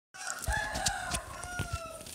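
A rooster crowing: one long call that drifts slightly down in pitch over about a second and a half. A few sharp clicks sound over it.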